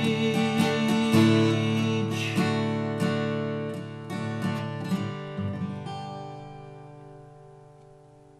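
Acoustic guitar strumming the closing chords of a country song. The strumming stops about five and a half seconds in, and the last chord rings out and fades away.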